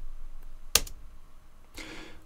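A sharp click of a computer key or mouse button about three-quarters of a second in, with a faint second tick just after, advancing the lecture slide; a short breath follows near the end.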